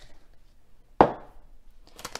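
A single sharp knock about a second in, a kitchen utensil set down hard against the cookware or counter. Near the end comes the first crinkling of a plastic herb packet being picked up.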